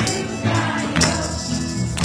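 Children's choir singing a Hanukkah song, with a sharp percussion beat about once a second.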